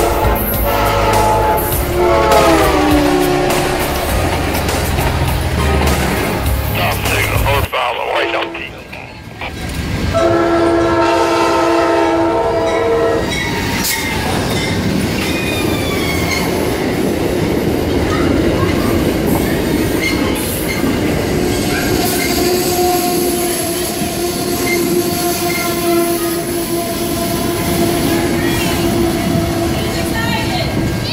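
Diesel passenger locomotive horns and train passing. A multi-chime horn chord drops in pitch as a locomotive passes close, over its heavy engine rumble. After a short break, a GE P42DC's K5LA five-chime horn sounds a steady blast for about three seconds. Then Amtrak passenger cars roll past with continuous wheel clatter and occasional wheel squeal.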